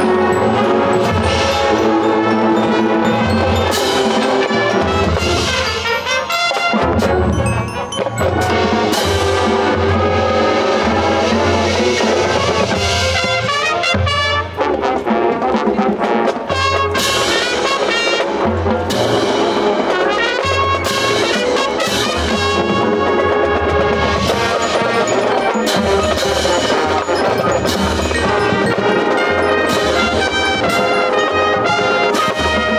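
High school marching band playing its field show: brass section with percussion, loud and continuous.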